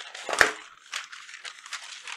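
A single sharp click about half a second in, followed by faint, crackly rustling close to a microphone.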